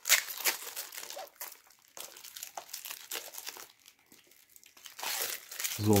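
Clear protective plastic film being peeled off a guitar pickguard and crumpled in the hands, crinkling on and off, loudest at the start and again near the end.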